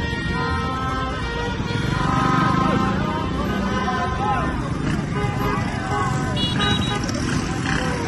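Street celebration din: a crowd shouting and cheering over the running engines of slow-moving cars and motorcycles. Car horns honk, with a short horn toot about six and a half seconds in.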